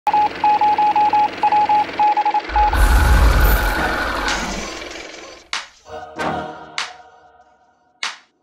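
Produced intro music and sound effects: short high electronic beeps in quick clusters, then a deep boom with a rushing hiss that slowly fades, then three sharp musical stabs that die away.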